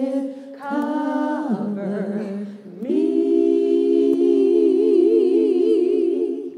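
Women's voices singing a worship song unaccompanied, in long held notes. A short break comes near three seconds in, then a long held note with a wavering vibrato.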